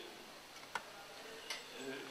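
Two sharp clicks about three quarters of a second apart, over faint room noise.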